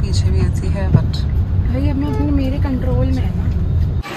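Steady low rumble of a car's engine and road noise heard inside the cabin of a moving taxi, with a single knock about a second in and a voice in the second half.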